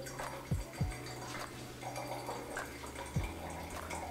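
Aperol being poured from its bottle into a wine glass over a little mineral water: a faint trickle of liquid, with a few dull low thumps.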